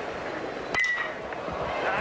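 Aluminum college baseball bat striking a pitched ball about a second in, a sharp crack with a brief metallic ping ringing after it, over the steady noise of a stadium crowd.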